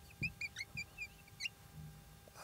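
Marker squeaking on a whiteboard as a word is written: a quick run of short high squeaks over the first second and a half, with a few faint knocks of the pen on the board.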